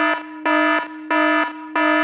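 An electronic alarm beeping in a regular on-off pattern, about three beeps in two seconds, each a buzzy tone with many overtones.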